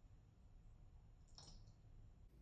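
Near silence: room tone with a low hum, and one faint click about halfway through.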